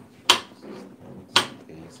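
Knife chopping on a cutting board: two sharp knocks about a second apart, with faint voices underneath.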